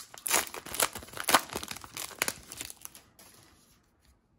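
The plastic wrapper of a 2020 Topps Heritage Minor League baseball card pack being torn open and crinkled by hand: a quick run of crackly rips and crinkles that stops about three seconds in.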